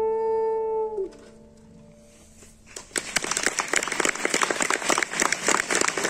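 Soprano saxophone and piano end the piece on a long held note that stops about a second in. After a short lull, audience applause breaks out and continues to the end, louder than the music was.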